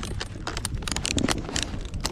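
Boots crunching on packed snow while walking: a quick, irregular run of crisp crunches.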